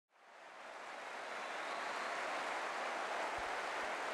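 A steady rushing noise that fades in over the first second or so and then holds evenly.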